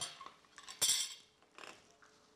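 Kitchen utensils handled on a counter: a short clatter about a second in, then a fainter one.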